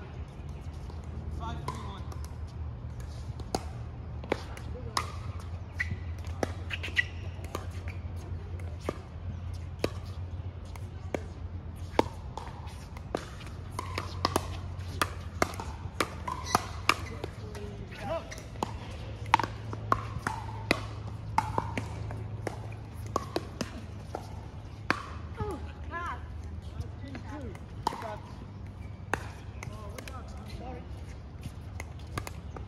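Pickleball paddles striking the plastic ball, sharp pops coming irregularly, many times over, from several courts at once, with faint voices of players among them.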